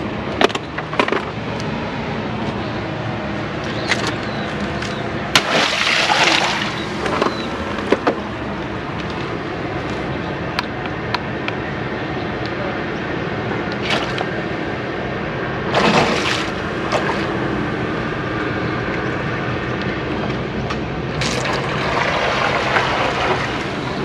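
Steady rush of moving water, with occasional small knocks and clicks and three louder rustling swells from handling close to the microphone.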